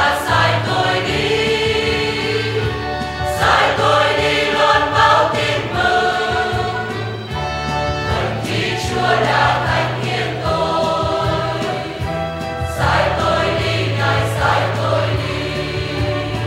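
A choir singing a hymn over instrumental accompaniment with sustained bass notes, in phrases that swell and ease off.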